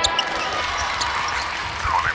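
A basketball bouncing on a hardwood floor, a few dull thumps, as a sound effect over the fading tail of a held electronic chord.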